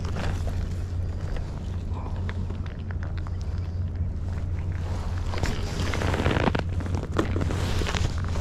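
Wind buffeting the microphone as a steady low rumble, with scattered small clicks and rustles from fishing tackle being handled, busier about five to seven seconds in.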